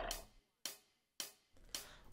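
Short percussion ticks keeping time in a near-quiet break of the music, evenly spaced about half a second apart.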